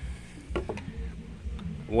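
A few faint clicks from plastic plumbing fittings being handled by hand over a low, steady rumble.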